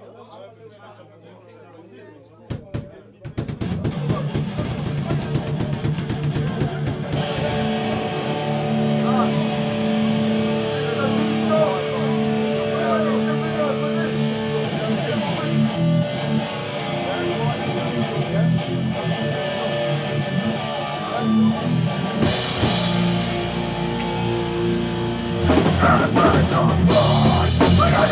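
Heavy hardcore band playing live: after a couple of quieter seconds, electric guitar and drum kit start the next song, and the full band comes in louder near the end.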